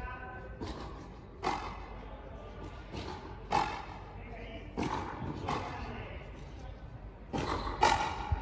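Frontenis rally: the ball cracking off tennis-style rackets and slapping the concrete front wall, about eight sharp hits that often come in pairs about half a second apart, each ringing briefly off the fronton walls.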